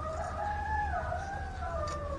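A rooster crowing once: one long call of about two seconds that drops in pitch near the end.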